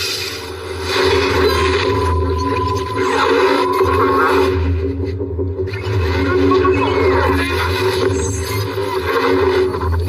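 Film sound design for a machine starting up: a loud, continuous mix of low electronic drones and scraping, rubbing noise, with a thin steady tone about two seconds in.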